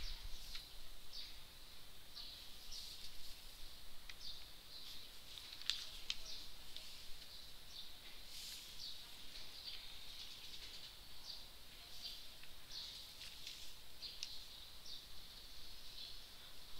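Faint high-pitched animal chirping in the background: short calls repeating about twice a second over a steady high hum, with a couple of faint clicks about six seconds in.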